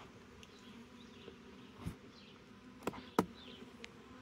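Honeybees buzzing around a nuc box, a faint steady hum, with three short clicks from the plastic nuc box being handled, about two, three and three and a quarter seconds in, the last the loudest.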